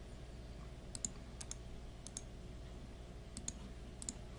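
Four computer mouse clicks, each a quick pair of sharp ticks, spread across the few seconds, over a low steady electrical hum.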